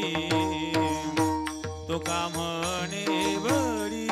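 A man singing a Marathi devotional song in long, bending held notes, over a steady drone and regular drum strokes with falling low bass tones.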